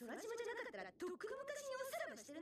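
Anime dialogue played back quietly: a woman's voice speaking in a high pitch that rises and falls.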